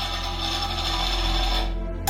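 Background film-score music: sustained tones over a steady low drone, the higher tones dropping away shortly before the end.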